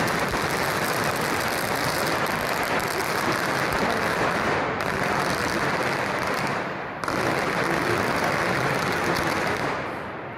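Strings of firecrackers going off in a dense, continuous crackle, dipping briefly about five seconds in and breaking off for a moment near seven seconds before starting again.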